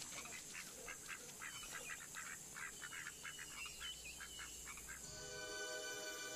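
Faint bird calls from the film's soundtrack: many short, quick notes in rapid succession. About five seconds in, music with held notes enters.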